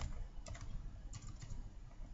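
Computer keyboard typing: a handful of quick, unevenly spaced keystrokes over a low steady hum.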